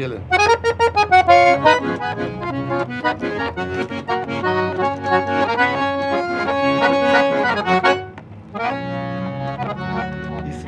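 Scandalli piano accordion played solo: a quick melodic phrase of changing notes and chords. It breaks off briefly about eight seconds in, then starts again.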